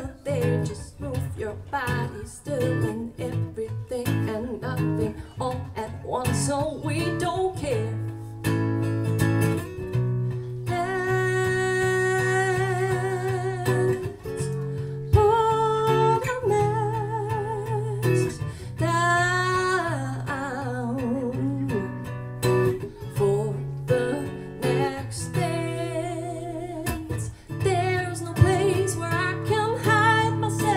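Female voice singing a melody with vibrato on long held notes, over a strummed acoustic guitar. About two-thirds of the way in, the voice sweeps up and back down.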